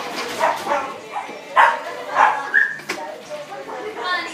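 Shih Tzu puppy giving a few short yips, the two loudest about one and a half and two seconds in, with people's voices.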